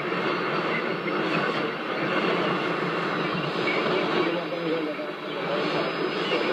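Shortwave AM broadcast of Rádio Nacional da Amazônia on 6180 kHz coming from a Toshiba RP-2000F receiver's loudspeaker: a faint voice half buried in heavy static hiss, the audio thin and cut off at the top like narrow AM reception.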